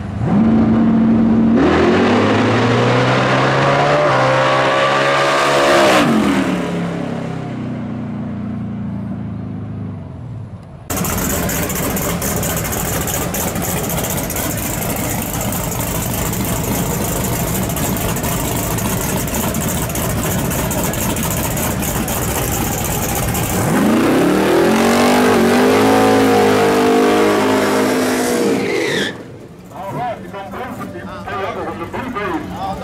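Drag-race car engine at full throttle on a hard launch, its pitch climbing through the run and then falling away as it goes down the track. After a sudden cut comes a long, steady roar of engine and spinning tyres from a burnout, then a second full-throttle launch with the pitch rising and falling again.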